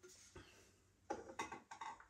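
Faint clinks and knocks of metal cans and glass bottles being moved about on a cupboard shelf, a quick cluster of them about a second in.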